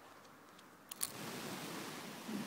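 Garden hose spray nozzle on its flat setting: a couple of short clicks about a second in, then the steady hiss of the water spray.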